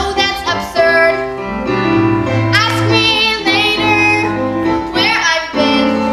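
A girl singing a solo musical-theatre song over instrumental accompaniment, with long held notes.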